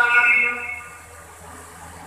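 A man's voice over a PA system, holding the tail of a sung, chanted note that fades out within the first half-second. Then a lull with only a faint low hum.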